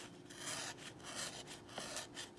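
Faint, scratchy rubbing as the edge of a CPM-20CV steel folding-knife blade is drawn against a sheet of paper, a test of how sharp the edge still is.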